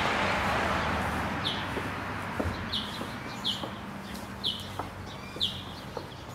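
A bird calling outdoors, a short high note sliding downward and repeated about once a second. Under the first calls a rush of noise fades away over about two seconds, and faint ticks come through now and then.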